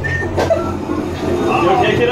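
A woman laughing and voices over the steady low hum of a spinning teacup ride, with one sharp knock about half a second in.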